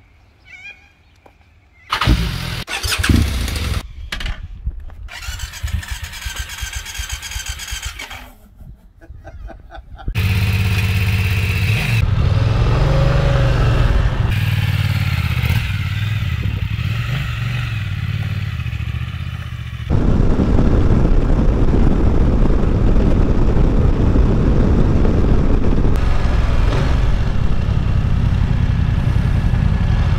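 Motorcycle engines in a few short cuts: an engine starting with a sudden loud burst about two seconds in, then a BMW F 900 XR's parallel-twin running and revving briefly as it pulls away, and from about two-thirds through a louder steady noise of riding.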